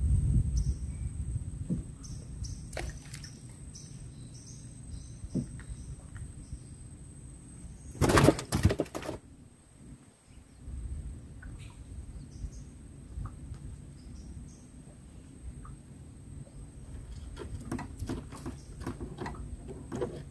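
Quiet open-water ambience from a small wooden boat: a low steady rumble of wind and water, with faint short bird chirps in the first few seconds. A loud burst of noise lasting about a second comes about eight seconds in.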